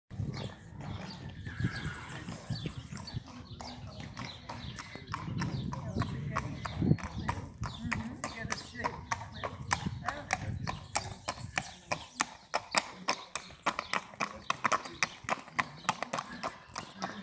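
Lusitano horses' hooves clip-clopping on paving as they are led at a walk. The hoofbeats grow sharper and fall into an even beat of several a second in the last few seconds.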